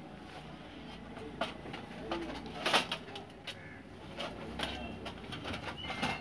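Light clicks and knocks of a fan heater's sheet-metal reflector and grille being handled during disassembly, a few separate taps with the loudest about three seconds in, over a soft low cooing in the background.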